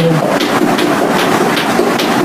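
A sustained sung note cuts off just at the start, followed by a steady spell of hand clapping from a few people in a small room.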